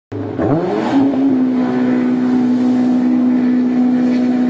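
An engine revs up, its pitch rising over about the first second, then holds at a steady high pitch.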